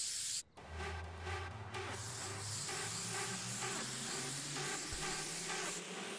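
Garden hose spray nozzle hissing steadily as it sprays water. Background music comes in about half a second in and plays under the hiss.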